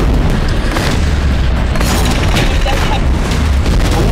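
Loud explosion booms over a continuous heavy rumble, with music underneath.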